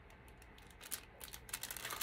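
Faint handling noises: a few light clicks and crinkles of cellophane wrap as a small wrapped package is handled, getting busier near the end.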